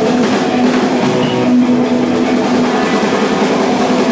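Hard rock band playing live and loud: electric guitar and drum kit, with sustained held notes over steady drumming.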